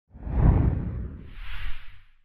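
Whoosh sound effects for an animated title: a low, rumbling whoosh swells up about a quarter second in, then a second, higher-pitched whoosh comes near the end and fades out.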